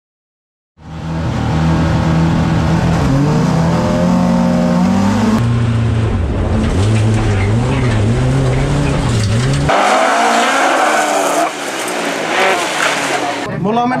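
Folk-race car engine heard from inside the cabin, driven hard on track, its pitch climbing and dropping through the gears; it starts about a second in. About two-thirds of the way through, the low engine note drops away and a higher-pitched screech takes over.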